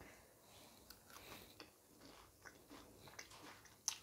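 Faint chewing of a mouthful of dosa dipped in idli podi, with small scattered clicks and a sharper click near the end.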